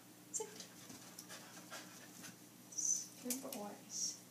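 Schnauzers shifting on rubber balance discs as they settle into a sit, with scattered soft clicks, some panting and a short whine-like sound about three and a half seconds in. A soft murmured voice with hissed sounds comes in near the end.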